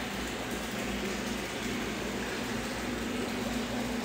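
Aquarium filter running: a steady hiss of moving water with a low steady hum underneath.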